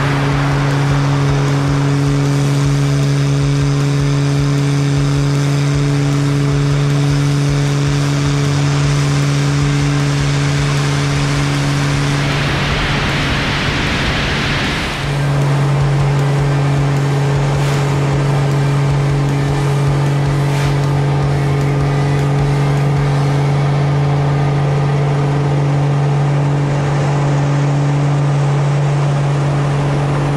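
A Pitts Special biplane's engine and propeller droning steadily in flight, heard from the aircraft. A little before the middle, the drone drops out for about three seconds under a rush of wind, then the steady drone returns.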